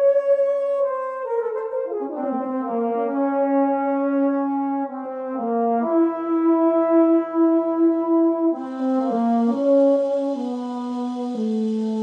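Euphonium playing a slow, legato melody of long held notes that step up and down in pitch. A steady hiss joins about two-thirds of the way through.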